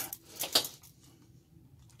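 Two light metallic clicks from handling the small metal parts of a claw-machine claw, the louder one about half a second in.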